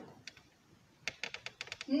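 A quick run of about ten light, sharp clicks or taps lasting under a second, beginning about halfway through after a short quiet pause.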